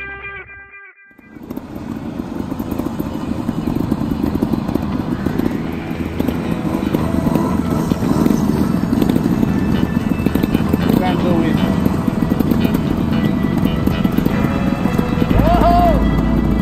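Trials motorcycle engines running, with a few short rises in pitch as throttle is opened, mixed with indistinct voices. Guitar music fades out in the first second.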